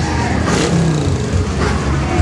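Motorcycle engines running, a steady low sound.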